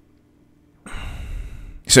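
A man's audible breath into a close microphone, about a second long, starting a little under a second in after near silence, just before he speaks again.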